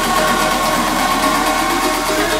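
Progressive house DJ mix playing, here a passage of held synth tones that carries straight on from the electronic dance music either side.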